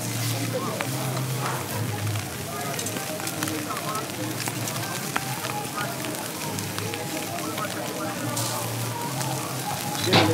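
Busy open-air ambience of background chatter, with the crackle of a wood-burning grill fire and a low hum that comes and goes.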